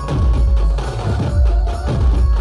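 Dhumal band playing a qawwali tune: heavy bass drums and hand drums beat under short held melody notes.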